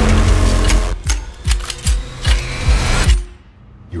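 Trailer soundtrack: a heavy low hit, then a driving pulse of low thumps about two and a half a second, each topped by a sharp metallic click of rifles being handled, over a held drone. It all cuts off about three seconds in.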